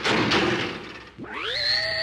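A thud at the start that fades out over about a second, then a rising whine that climbs for a moment and levels off into a steady high hum, like a jet turbine spooling up: a Batmobile turbine start-up sound effect.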